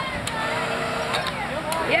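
Faint voices in the background over a steady outdoor hum, with a few short light clicks.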